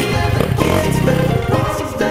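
Music playing, with a motocross bike's engine revving over it until shortly before the end.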